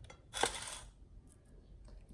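A brief metallic clink and rattle about half a second in, followed by a few faint clicks.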